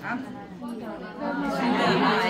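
Several people talking over one another. The chatter grows louder a little over a second in.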